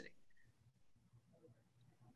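Near silence: faint room tone in a pause between speakers.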